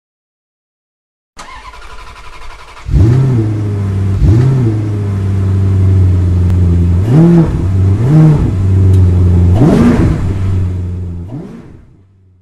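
A car engine starts about a second and a half in, then idles with five short revs of the throttle, and fades out near the end.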